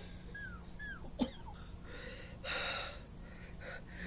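Faint, labored breathing of a bedridden sick man, with one breathy exhale about two and a half seconds in. A few faint squeaks and a click come in the first second or so.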